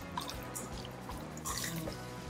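Wet squelching of cubed raw salmon being stirred with a spoon in a stainless steel bowl, in a few short bursts, over soft background music.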